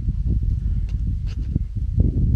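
Wind buffeting a microphone outdoors: a loud, uneven low rumble, with a few faint clicks about a second in.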